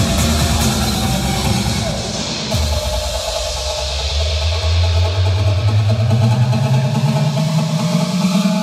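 Vinahouse (Vietnamese club remix) dance music. The driving beat drops out about two and a half seconds in, and a deep bass tone then slides slowly and steadily upward.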